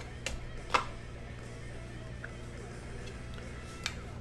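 Soft background music over a steady low hum, with two sharp clicks in the first second and a faint one near the end from trading-card packaging being handled.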